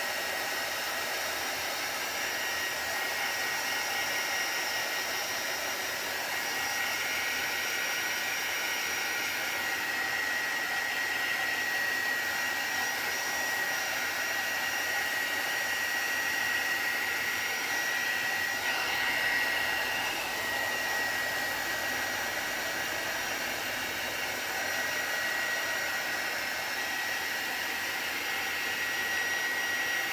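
Handheld heat gun running steadily. Its air rushes evenly under a high, steady motor whine, with a brief shift in tone about two-thirds of the way through.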